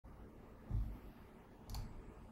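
Two handling sounds at a computer desk: a dull low thump about two-thirds of a second in, then a sharp click near the end, over faint room tone.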